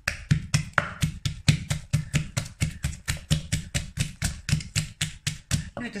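Wooden pestle pounding fresh chillies and garlic in an earthenware mortar, a steady rhythm of about four to five strokes a second.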